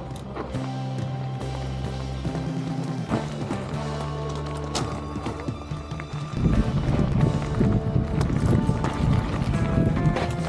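Background music with held tones and plucked notes. About six seconds in, a louder rough crunching rumble joins it: mountain bike tyres rolling over a loose gravel track.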